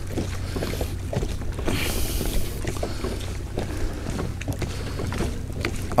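Hands tossing thin slices of raw fish dressed with oil, vinegar and salt in a plastic bowl, giving soft scattered clicks and squelches. Under it runs a steady low hum, and a gust of wind hisses briefly about two seconds in.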